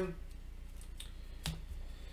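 Board game cards and cardboard pieces being handled on a tabletop: faint rustling with one sharp tap about a second and a half in.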